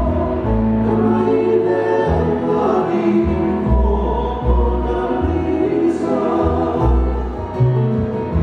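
Live acoustic Hawaiian song: a man singing lead over two strummed acoustic guitars and an upright bass, amplified through a PA, with the bass notes changing every second or so.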